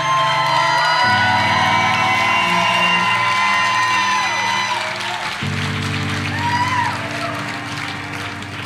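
Live instrumental accompaniment of sustained low notes, changing chord about a second in and again about five seconds in, under audience cheering and whooping that fades after about five seconds.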